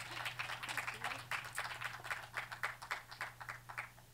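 Audience applause, many hands clapping, thinning out and stopping near the end. A low steady hum runs underneath and cuts off with it.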